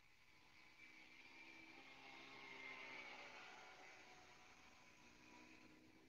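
Faint 63 cc four-stroke air-cooled mini tiller engine running as it churns soil, swelling to its loudest about halfway through and then fading again.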